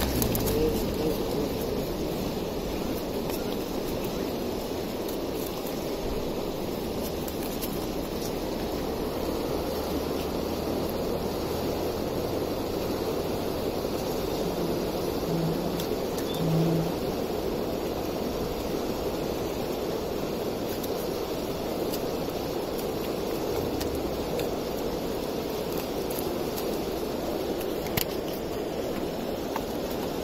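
Steady rushing outdoor background noise with no distinct events, broken by two short low hums about fifteen and sixteen and a half seconds in.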